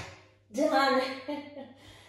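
Beat-driven workout music ends and dies away in the first moments. A woman's voice follows briefly about half a second in.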